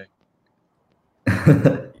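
About a second of dead silence, then a short burst of a person laughing.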